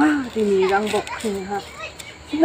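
A woman speaking in Garo, in a conversational back-and-forth.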